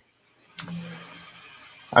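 A man's soft breathy vocal sound, starting suddenly about half a second in with a brief low hum and fading away as a breath.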